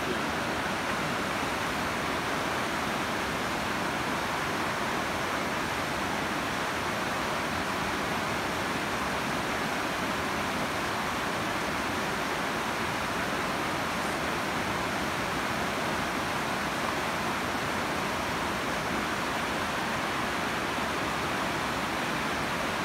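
Fast-flowing river rapids over rocks: a steady, even rush of water.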